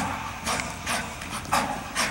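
An athlete's shoes striking artificial turf in quick steps, about two sharp footfalls a second.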